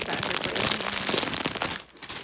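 Plastic and bubble-wrap packaging being crinkled and pulled off by hand, a dense rustling full of sharp crackles that stops shortly before the end.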